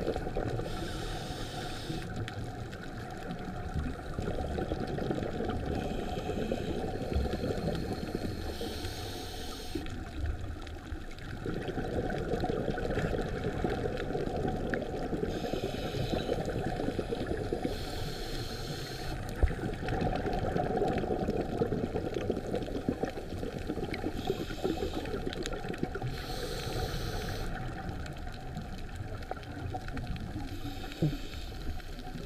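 Underwater sound picked up through a camera housing: a steady low water rumble, with bursts of a scuba diver's exhaled regulator bubbles every few seconds, often two close together.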